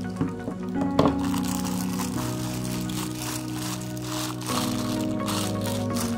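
Background music with long held notes, over clear plastic packaging crinkling as it is handled and pulled off, with one sharp crack about a second in.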